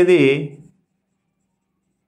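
A man's voice finishing a word, trailing off within the first second, then dead silence.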